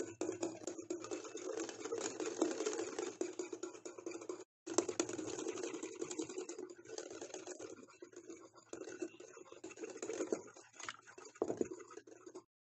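A wire whisk beating whipped-coffee mixture (instant coffee, sugar and warm water) by hand in a glass bowl: rapid, continuous clicking and scraping against the glass. It breaks off for an instant about four and a half seconds in. The mixture is at the stage of turning thick and pale.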